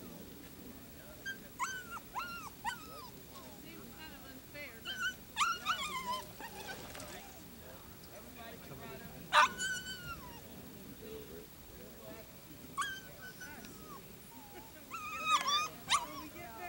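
A dog whining and yipping off and on, short high calls every few seconds, the loudest about nine and a half seconds in.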